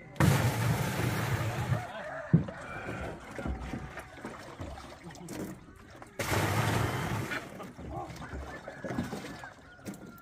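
Water poured from a bucket into a large tank, splashing in two pours: one at the start lasting about two seconds, and another about six seconds in. A single sharp knock comes a little after two seconds.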